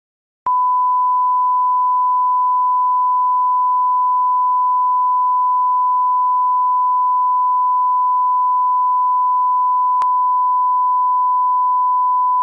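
A 1 kHz reference test tone: one pure, unchanging electronic beep at a single mid pitch, starting about half a second in and holding at a steady loud level, with a faint click about ten seconds in.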